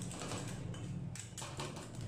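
Two metal spatulas chopping rapidly against the frozen metal plate of a rolled-ice-cream pan, working the ice cream mixture: a dense run of quick taps and scrapes over a steady low hum.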